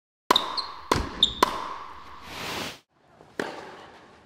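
Intro sound effect: a ball bouncing four times, the bounces coming quicker each time with a short ringing tone after them, then a whoosh and one last sharp hit that dies away.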